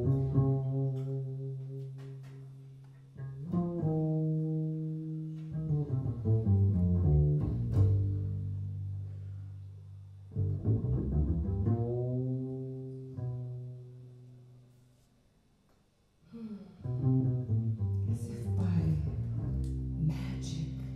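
Double bass improvising on its own with low notes, bowed and plucked, some gliding in pitch, in phrases that sound and then fade away. It falls to near silence about three-quarters of the way through, then comes back with a brighter passage near the end.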